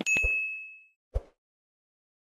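A notification-bell 'ding' sound effect: one bright, ringing chime struck at the start that fades over about half a second. A short soft click follows about a second later.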